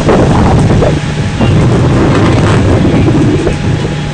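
Fire engine running steadily with a low, even rumble, mixed with wind buffeting the microphone.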